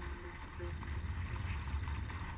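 Wind noise on the camera microphone of a flying paraglider: a steady low rumble with a hiss above it. The last notes of background music fade out within the first second.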